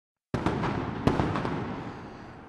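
Street riot between police and protesters: a noisy din cuts in abruptly, broken by several sharp bangs, the loudest just after it starts and about a second in, then slowly fades.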